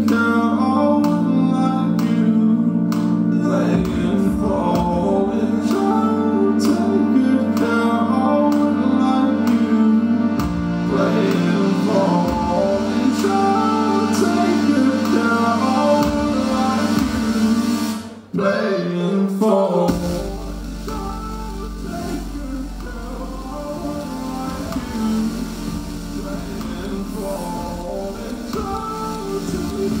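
Live band music: keyboard chords and wordless layered singing. About 18 seconds in, the music drops out almost completely for a moment. It then resumes a little quieter over a deep, steady sub-bass.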